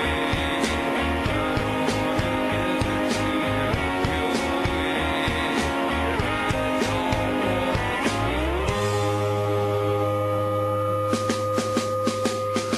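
Live rock band playing a slow song on electric guitars, bass and drums. About nine seconds in, the beat drops out after a sliding guitar note, leaving a held low bass note, and the drums come back in near the end.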